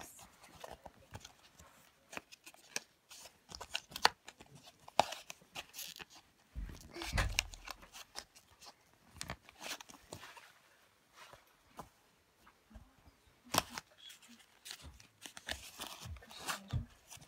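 Clear plastic toy packaging being handled and pulled apart by hand: irregular crinkles and sharp clicks of thin plastic, with a low bump about seven seconds in.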